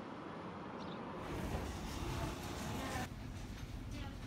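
Steady low background rumble of outdoor ambience, changing in character about a second in and again near three seconds in.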